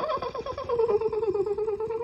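A person's long, high-pitched squealing laugh: one unbroken note that falls slightly in pitch with a rapid fluttering pulse.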